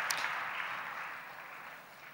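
Large audience applauding in a big hall, the clapping dying away steadily to near quiet.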